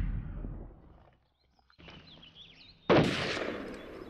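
Film sound effect of explosions. The tail of one blast dies away, there is a brief hush, then a second sharp blast about three seconds in trails off over the next second.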